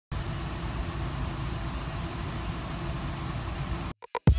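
Car engine idling at about 800 rpm, heard inside the cabin, with the air conditioning fan blowing a steady rush of air to cool a sun-baked car. The sound holds steady, then cuts off suddenly just before the end.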